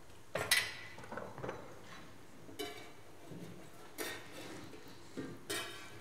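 A handful of light clinks and taps from kitchen handling: a porcelain coffee cup set down upside down on a paper-lined stainless steel tray, and parmesan crisps being handled on metal trays. A few of the taps ring briefly.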